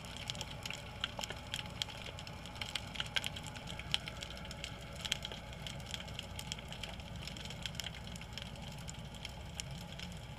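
Underwater ambience: a dense, irregular crackle of sharp clicks over a steady low rumble.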